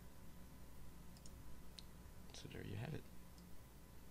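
A few faint, scattered computer mouse clicks, with a short low vocal sound from the narrator, without words, about two and a half seconds in.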